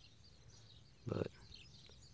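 Faint outdoor background of scattered small bird chirps, with one short spoken word about a second in.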